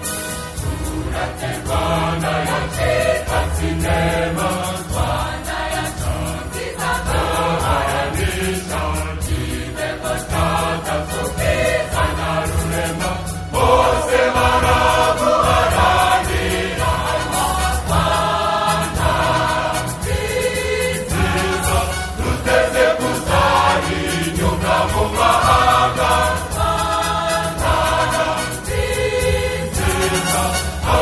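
Choral song: a choir of voices singing with instrumental backing, the music growing louder about halfway through.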